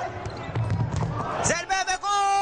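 Indoor futsal game sound: a low arena din with a few sharp knocks of the ball being kicked and bouncing on the court. A voice sounds briefly near the end.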